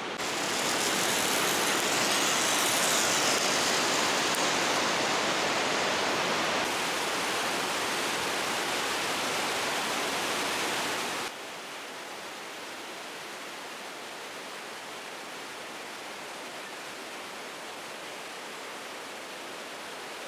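Steady rush of falling water from the Sainte-Anne Falls, an even noise that drops abruptly to a quieter level about eleven seconds in.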